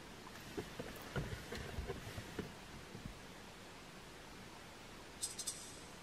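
Faint handling noise: a scatter of light knocks and rustles in the first three seconds, then a quick run of three sharp clicks about five seconds in.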